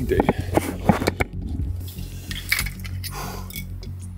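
A run of light clicks and clinks of small hard objects being handled close to the microphone, thickest in the first second, with a few more later, over a low steady hum.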